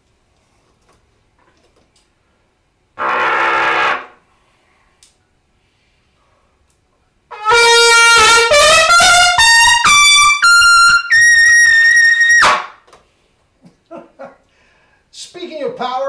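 Trumpet played with power: after a short low buzz about three seconds in, a fast run climbs step by step up to a very high note, a double high C, held for about a second and a half before cutting off. Short voice sounds follow near the end.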